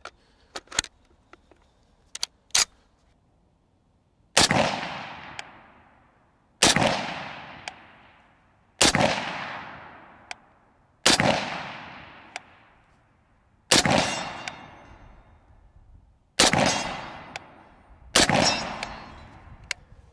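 Springfield Armory M1A Scout Squad, a .308 semi-automatic rifle with a muzzle brake, firing seven single shots of 168-grain match ammunition, a little over two seconds apart, each shot followed by an echo that fades over a second or two. A few light clicks come first as the rifle is loaded.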